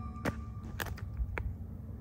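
Low, steady rumble of wind on a phone microphone outdoors, broken by four or five short sharp clicks or taps.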